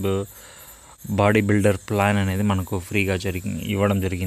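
A man talking, with a short pause a little after the start; a faint, steady, high-pitched tone runs behind the voice throughout.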